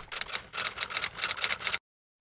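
Typewriter key-clicking sound effect: a quick, even run of sharp clicks, about eight a second, cutting off suddenly near the end.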